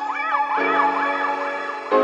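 Background music of held keyboard chords, with a high warbling tone that rises and falls about four times a second. A new chord comes in about half a second in and another near the end, as the warble stops.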